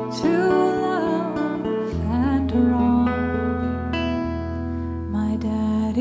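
Fiddle playing a wavering, sliding melody over acoustic guitar accompaniment, with deeper bass notes from the guitar coming in about two seconds in.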